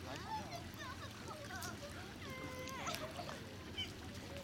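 Indistinct voices of people talking at a distance, too faint to make out words, one voice holding a note for about half a second near the middle, over a steady low rumble.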